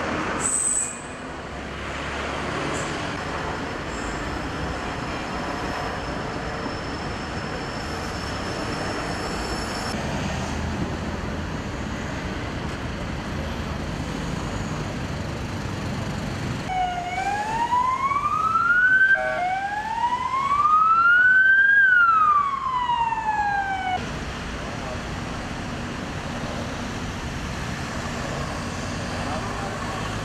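Road traffic noise with an emergency-vehicle siren wailing for about seven seconds more than halfway through: two rising sweeps and one falling sweep, then it cuts off abruptly.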